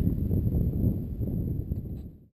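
Wind buffeting the camera microphone of a paraglider pilot in flight: a low, uneven rush that fades out toward the end.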